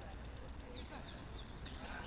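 Distant voices calling out across an outdoor football pitch over a steady background hum, with a run of four quick, high, falling chirps about a second in.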